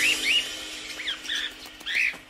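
A handful of short bird chirps, each sliding quickly up or down in pitch, coming in two or three small clusters over the faint fading tail of the music.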